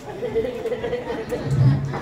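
Voices in a hall: a drawn-out, wavering high vocal sound for about a second, then a brief stretch of low speech near the end.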